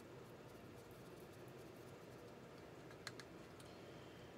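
Near silence: faint room hiss, with a few light clicks about three seconds in from handling a small cup of Tru-oil thinned with mineral spirits.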